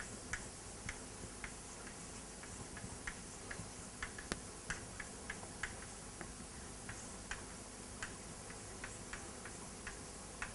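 Chalk writing on a blackboard: a run of short, irregular clicks and taps as the chalk strikes and drags across the board letter by letter.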